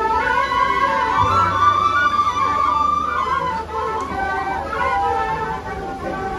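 An ensemble of wooden shepherd's flutes playing a Romanian folk tune together, amplified through a stage sound system; the music starts suddenly.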